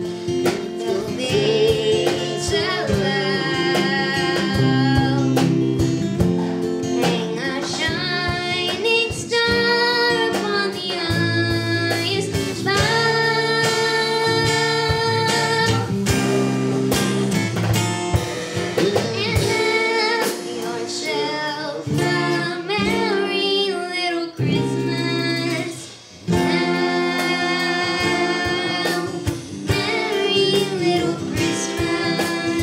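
A young girl singing to a strummed acoustic guitar, with a man's voice alongside on some lines; the notes are held and wavering, with a short pause near the end.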